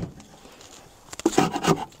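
Metal hive tool scraping propolis and beeswax from the inside corner of a wooden hive box: faint scraping, then a few light clicks about a second in, with a voice starting near the end.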